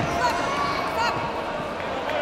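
Voices of people shouting and talking in a large, echoing sports hall, with a few dull thuds near the start and about a second in.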